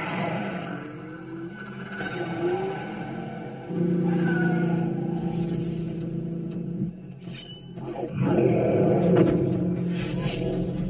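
Film soundtrack: a dark score with a held low note through the middle, and a louder passage with a roar near the end.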